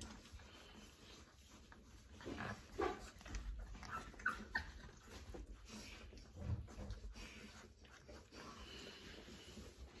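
Faint, scattered whimpers and soft squeaks from a 3.5-week-old Newfoundland puppy, with a few short high squeaks about four seconds in.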